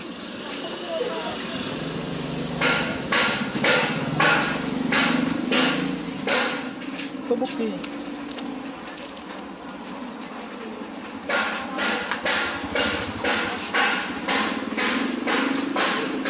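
A series of sharp knocks, about two to three a second, in two runs separated by a quieter stretch, over a low hum in the first half.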